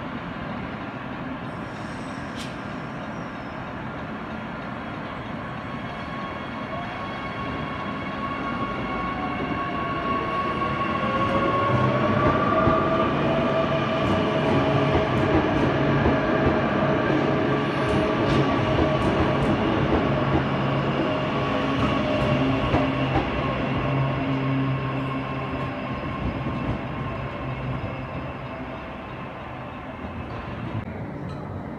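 Queensland Rail electric multiple-unit train running alongside a station platform. Its motor whine rises in pitch about ten seconds in and then holds steady over the rolling rumble. It gets louder through the middle and fades near the end.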